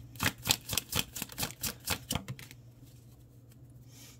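A deck of oracle cards being shuffled by hand: a quick, even run of card slaps, about four or five a second. It stops about two and a half seconds in, leaving only faint handling.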